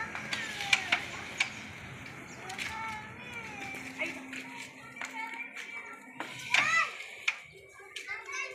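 Several sharp clicks of a cue striking the flat disc pieces and the discs knocking together on a wooden Pinoy pool board, the loudest about six and a half seconds in, over the voices of onlookers and children.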